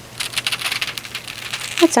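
Heat transfer foil sheet being peeled back off a wooden surface, its thin film crackling with a rapid run of small ticks as it pulls away from the cooled adhesive. A woman's voice starts near the end.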